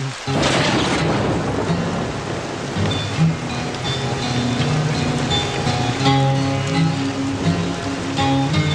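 Film soundtrack of rain falling steadily, with a rumbling burst of thunder just under a second in. Background music with held notes comes in about three seconds in and swells around six seconds.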